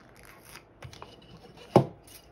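Hands pressing and rubbing a vinyl sticker label onto a small glass bottle, with light rustles and small clicks, then one sharp knock about three-quarters of the way through.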